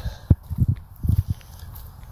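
Footsteps of a person walking, heard as a series of dull low thuds several times a second.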